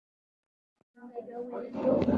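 Silence for about a second, then a person's voice, drawn out and unclear with no words made out, growing louder toward the end.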